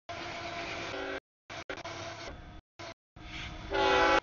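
Freight train rumble at a grade crossing, then a CSX diesel locomotive's horn sounds loudly near the end. The sound cuts in and out several times with brief silent gaps.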